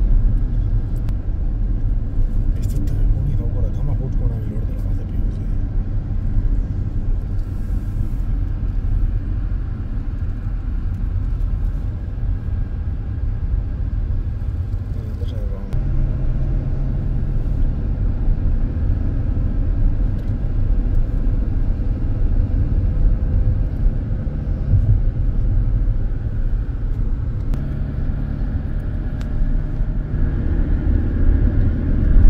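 Car driving, heard from inside the cabin: a steady low rumble of engine and road noise whose pitch shifts about halfway through.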